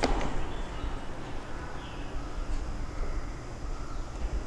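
A sharp click at the very start, then a steady low rumble of room noise.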